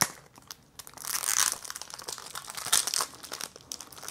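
Crinkling and rustling of CD packaging being opened and handled, with scattered small clicks; the rustle grows louder about a second in.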